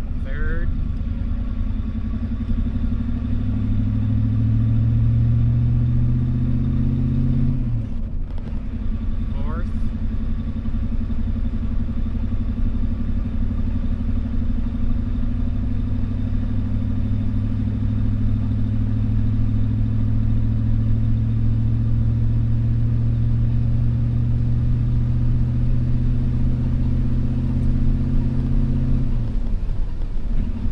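1988 Ford F-250's 7.3-litre IDI V8 diesel heard from inside the cab, warmed up and pulling under load up a steep hill from a standstill. The engine note rises steadily, drops at a gear change about eight seconds in, then climbs slowly through the next gear until another shift near the end.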